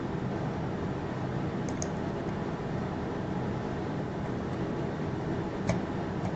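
Steady whooshing hum of an electric fan running in a small room, with two faint clicks, about two seconds in and near the end.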